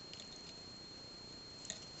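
Quiet handling of small plastic pearl beads on thin metal wire, with one faint click near the end, over a low steady hiss and a thin, steady high-pitched whine.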